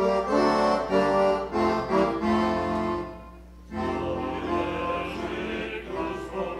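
Accordion playing a carol tune in steady held chords. It breaks off about three seconds in, and a fuller musical passage begins a moment later.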